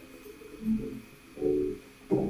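A faint voice in two short bursts, about half a second and a second and a half in, quieter than the speech around it.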